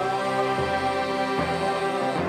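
A small group of men singing a Simalungun hymn together, holding sustained notes and moving from note to note.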